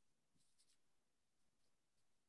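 Near silence: a pause in a video call with only faint background hiss.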